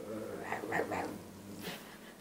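A man imitating a bear, growling with a few short, wavering vocal calls about half a second to a second in, followed by a brief sharp rustle near the end.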